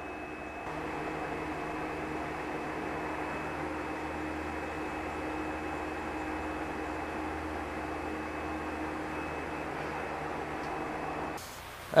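Steady mechanical hum and hiss of running equipment, with a thin high whine held over it; it steps up a little about a second in.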